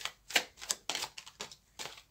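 A Rider–Waite tarot deck being shuffled from hand to hand: a quick, irregular run of sharp papery snaps and slaps as the cards strike one another.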